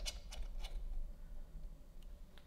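A few light plastic clicks and ticks as a small LED video light is pushed and fitted into its mount on a phone rig. Most of the clicks fall in the first second.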